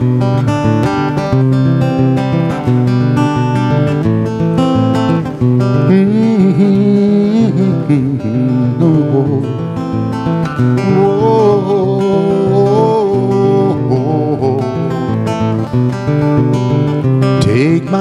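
Acoustic guitar playing an instrumental passage of a folk-pop ballad, with a wordless vocal line rising and falling over it in the middle.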